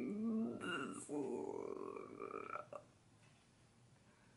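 A woman's soft, wordless voice sounds, drawn out and trailing off, then near silence from about three seconds in.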